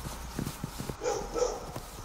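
A horse walking, its hooves making soft, irregular knocks over a low steady hum.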